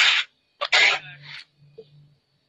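Two short, loud breathy bursts from a person's voice, then a low murmured hum.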